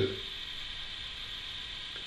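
Pause in speech: steady faint hiss of the recording's background noise, room tone in a small room.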